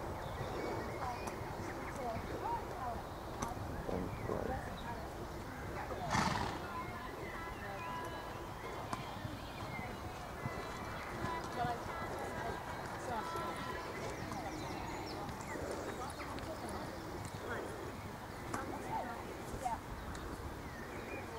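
Horse's hooves on a soft sand dressage arena as it canters and trots, with faint voices in the background and one brief louder noise about six seconds in.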